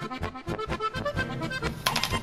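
Background accordion music with a steady beat, with a brief sharp click near the end.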